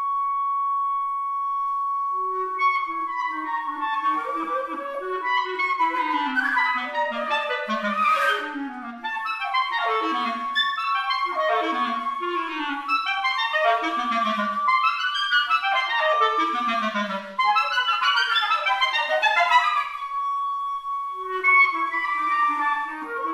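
Flute and clarinet duo playing a contemporary chamber piece. A high note is held steadily the whole time. From about three seconds in, clarinet runs sweep quickly downward again and again, every second and a half or two, dropping low into the instrument's lower register.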